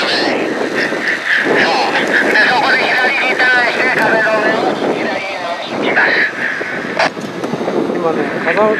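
Indistinct voices of people talking, with a single sharp click about seven seconds in.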